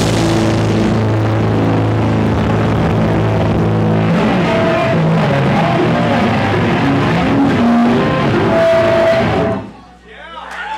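Loud live heavy music from a band: distorted electric guitar and bass over a drum kit. The song cuts off abruptly just before the end.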